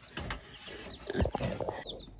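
Baby chicks peeping briefly near the end, over rustling and a dull bump about a second in.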